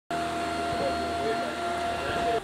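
Canister vacuum cleaner running steadily with a constant whine, its powered floor head pushed back and forth over carpet.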